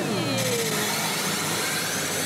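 Evangelion pachinko machine playing a loud, whooshing sound effect with a falling tone in the first second, as its screen flashes a cross animation, over the steady din of a pachinko hall.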